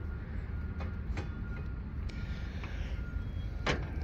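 Fold-down step on an aftermarket front bumper being unlatched and swung down: a few light clicks, the clearest near the end, over a steady low rumble.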